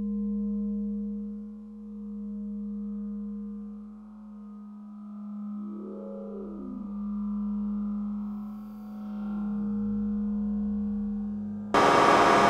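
Synthesized sci-fi drone: a steady low hum that swells and fades every few seconds, with a warbling tone about halfway through. Near the end, a loud burst of electronic static cuts in.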